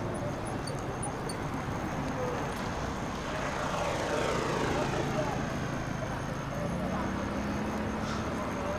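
Steady city street ambience: a traffic hum with a vehicle passing by around the middle, and faint voices in the background.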